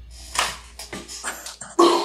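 Short excited squeals and gasps from women reacting, the loudest burst near the end. Under them, the low rumble of the song's last note fades out.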